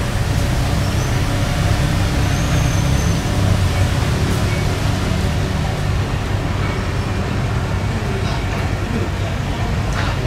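Heavy construction machinery running steadily, a continuous low diesel drone: a mini excavator working and a crane truck hoisting a steel beam.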